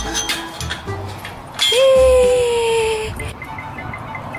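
Chain-link gate squealing as it is opened: one loud, steady screech about a second and a half in, lasting about a second and a half and dropping slightly in pitch, after a few light metal clinks from the latch. Background music plays throughout.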